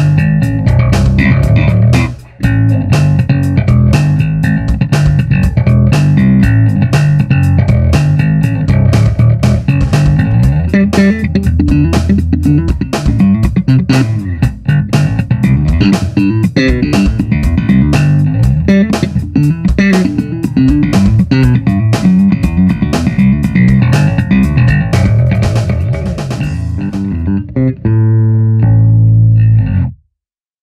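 Five-string electric bass (Freedom Custom Guitar Research RHINO) played through a Hartke HA3500 bass amp: a run of quick notes with sharp attacks, with a brief break about two seconds in. It ends on one held low note that cuts off suddenly at the end.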